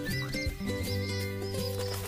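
Instrumental music with a steady low bass line and held notes, and short high chirps repeating a few times a second on top.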